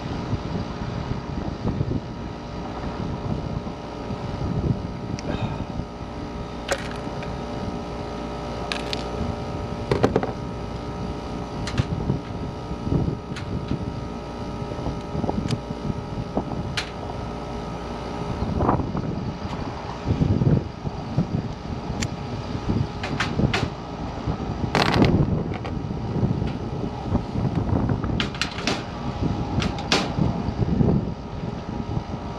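Gusting wind buffeting the microphone over a steady mechanical hum of rooftop HVAC equipment. Scattered sharp clicks and knocks come from gloved hands working at the condenser unit, more of them in the second half.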